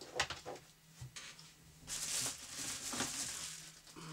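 A few light clicks and knocks as a cable is set down among accessories on a desk, then about two seconds of rustling packaging as the next accessory is taken out and unwrapped.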